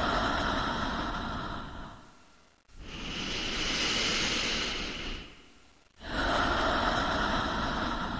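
Slow, deep human breathing, one long breath every three seconds or so. In-breaths and out-breaths alternate, one hissier and the next duller, each starting sharply and then fading.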